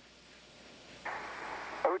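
Static hiss of a radio voice loop keying open: about a second in, a steady band of static comes up and holds until a voice begins at the very end.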